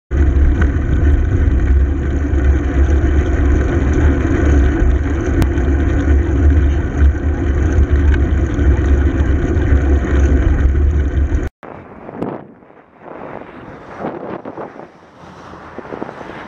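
Loud, steady wind buffeting and road rumble on a moving camera's microphone while riding. It cuts off suddenly about eleven and a half seconds in, giving way to a much quieter, uneven rush of wind and traffic.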